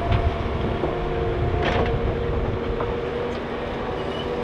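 Liebherr R950 SME crawler excavator's diesel engine working under load, with a steady hydraulic whine, as it lifts and slews a full bucket of soil and stones. A knock comes at the start and a short hiss just before two seconds in.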